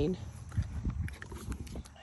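Scattered soft clicks and knocks from a paint horse close at hand, over a low rumble.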